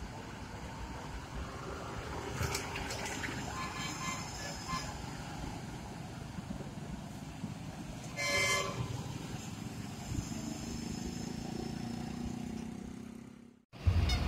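Large buses' diesel engines running as they pull away, a steady low rumble, with one short horn toot about eight seconds in. The sound cuts off suddenly just before the end.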